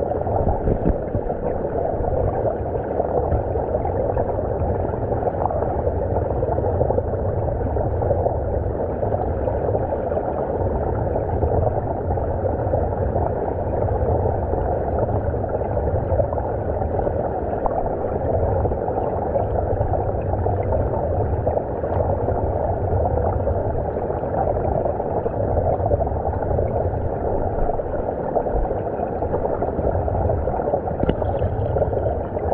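Shallow stream current washing over an underwater camera, heard from beneath the surface: a steady, muffled rush of moving water with no breaks.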